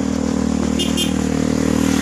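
A motorcycle engine running at a steady speed close by, a loud, even drone, with two short high chirps about a second in.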